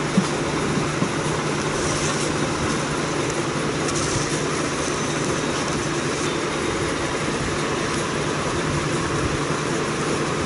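Steady machine noise: an even rushing sound with a low, constant hum underneath, unchanging in level.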